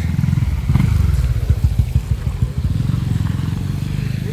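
Small motorcycle engine running close by, a low pulsing rumble that gets louder about a second in.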